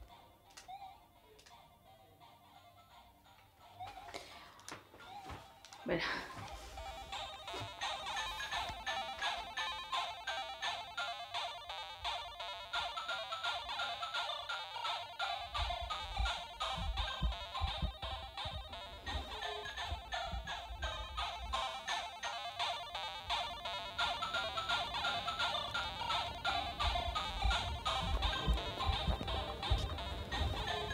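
Chiptune music from a Game Boy handheld: after a few faint clicks, it starts suddenly about six seconds in with a quick sweep, then runs on as a fast, busy beeping melody, with a deep bass pulse joining about halfway.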